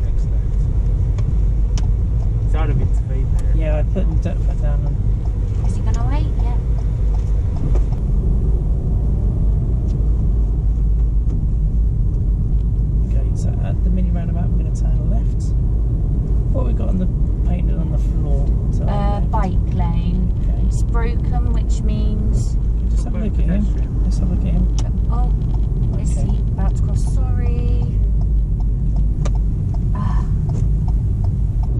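Steady low rumble of road and engine noise inside a moving car's cabin, with indistinct voices talking now and then over it.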